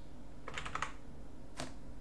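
Computer keyboard typing: a quick run of about four keystrokes about half a second in, then one more click a second later.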